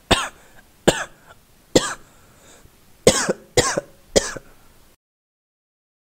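A person coughing in six separate coughs: three about a second apart, then after a pause three in quicker succession. The sound cuts off suddenly about five seconds in.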